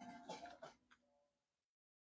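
A man clearing his throat once, a short burst of under a second that trails off quietly.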